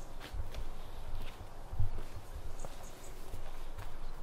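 Footsteps walking over brick paving and dry leaf litter: irregular thuds with light scuffs.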